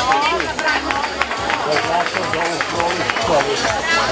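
Audience chatter: many voices talking at once and overlapping, with no single clear speaker.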